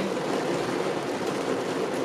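Heavy rain on a car's roof and windows heard from inside the cabin, a steady hiss.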